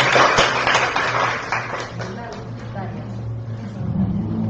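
Applause from a room of people clapping, dense at first and dying away about two seconds in.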